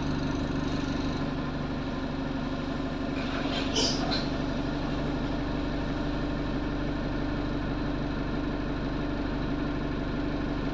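Diesel engine of an Alexander Dennis Enviro200 single-deck bus idling steadily, heard from inside the passenger saloon. A brief hissing burst about three and a half seconds in is the loudest sound.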